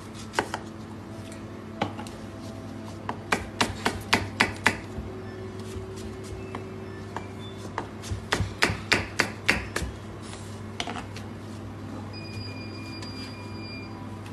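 Chef's knife chopping apple on a plastic cutting board: sharp knocks of the blade on the board, mostly in two quick runs of about six strokes each, with a steady low hum behind.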